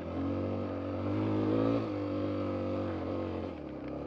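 Suzuki DR-Z250 dirt bike's single-cylinder four-stroke engine pulling hard up a steep trail hill climb, its pitch stepping up and down a few times as the throttle changes.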